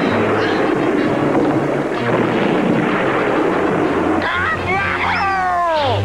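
Cartoon soundtrack: music with low held notes under a steady rushing noise effect, then about four seconds in a falling, whistle-like glide that slides steeply down in pitch.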